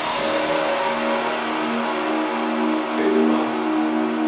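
Electronic trance track in a breakdown: the kick drum has dropped out, leaving held low synth tones under a noisy wash that slowly fades.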